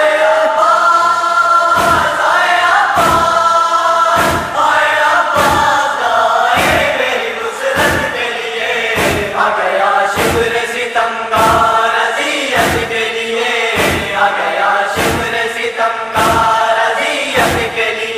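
A chorus of voices holding a sustained lament chant between the verses of a nauha, over a steady rhythmic thump about once a second, the chest-beating (matam) that keeps time in Shia mourning recitation.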